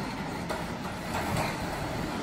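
Steady noise of an auditorium full of people, with faint scattered voices in the audience.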